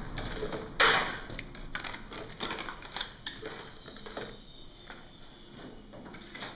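Irregular clicks, knocks and rustles of objects and clear plastic packaging being picked up and set down on a glass tabletop while it is cleared, with one louder clatter about a second in and the handling growing quieter toward the end.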